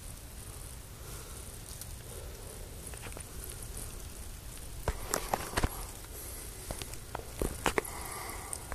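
Dry leaf litter crunching in a few sharp crackles, clustered about five seconds in and again near the end, over a low rumble of handling noise on a handheld phone's microphone.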